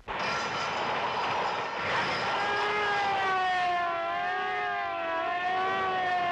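Cartoon sound effects of roller skates speeding off at great speed: a dense rushing noise, then from about two seconds in a wailing tone that wavers up and down like a siren.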